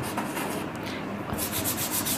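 Chalk scraping and rubbing on a blackboard as a word is written and partly wiped and rewritten, with a run of quick strokes in the second half.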